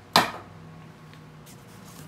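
A single sharp clack about a fifth of a second in, as a belt with a metal buckle is set down on a wooden table, dying away quickly; then only faint handling rustles.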